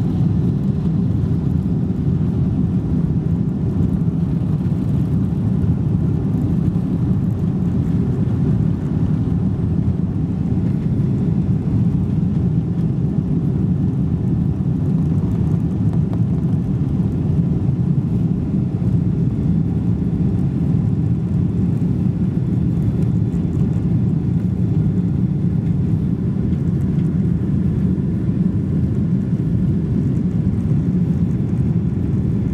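Steady low rumble of a Boeing 777-200ER's engines and airflow heard inside the passenger cabin during the climb just after takeoff.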